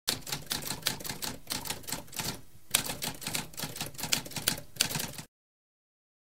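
Typewriter keys striking in a rapid, irregular run, with a brief pause about halfway, then cutting off suddenly a little after five seconds.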